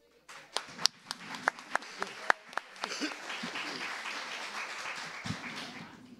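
Audience applause in a hall: a few scattered claps at first, building about halfway through into steady applause from many hands, then dying away near the end.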